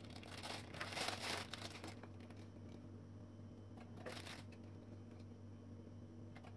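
Faint crinkling and rustling as ladyfinger biscuits are handled and laid in a silicone mould, in bursts over the first two seconds and again briefly about four seconds in.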